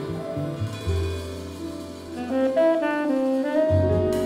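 Live jazz: tenor saxophone playing a melodic line over piano, double bass and drums, with a run of short notes in the second half.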